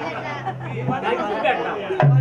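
Voices talking over one another, with a low steady note from the accompaniment in about the first second.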